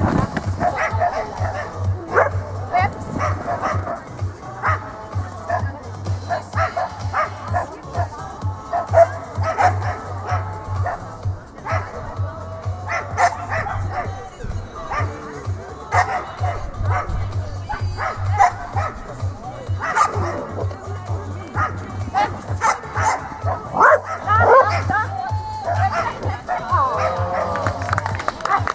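A dog barking and yipping again and again in short barks, over background music.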